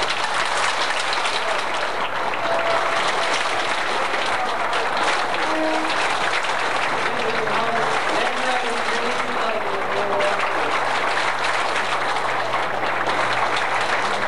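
A large audience applauding steadily for the whole stretch, with a few voices faintly under the clapping. Old videotape adds a steady low hum.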